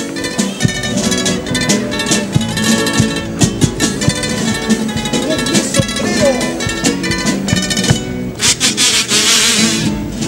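A carnival comparsa band of Spanish guitars and drums playing the instrumental introduction to its cuplé: strummed guitar chords over regular drum beats, with a brief noisy wash near the end.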